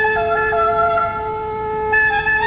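Instrumental music: a wind-instrument melody moving in steps over a steady held drone note.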